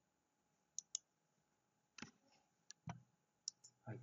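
Faint computer mouse clicks, scattered: a quick pair just before a second in, then single clicks around two, three and three and a half seconds in.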